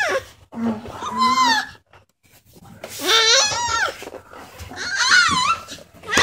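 A six-and-a-half-month-old baby's squealing, laughing vocalizations: three high-pitched calls that swoop up and down in pitch, with short pauses between them.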